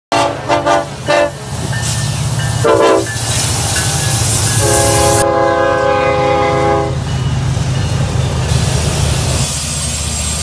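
Diesel freight locomotive horn: three quick toots, a short blast about two and a half seconds in, then one long blast of about two seconds. Under it runs the steady rumble of the locomotives' diesel engines and the train rolling past.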